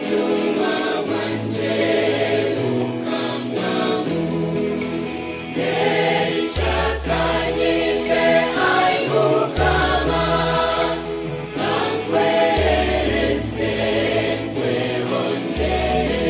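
Gospel song: a choir singing over instrumental backing. A deep bass line comes in about six and a half seconds in, holding each note for about three seconds.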